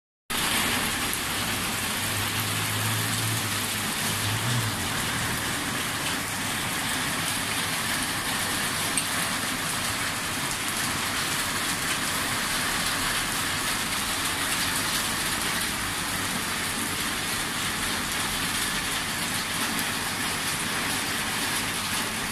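Heavy rain pouring onto flooded pavement, a steady hiss, with a low hum for a couple of seconds near the start.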